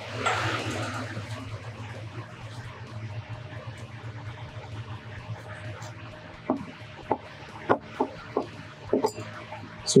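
A handful of sharp light clicks, about six over the last few seconds, as a Phillips screwdriver snugs a screw and a metal unistrut bracket is fitted to the tank's insert. A brief rush of noise comes at the start, and a steady low hum of room noise runs underneath.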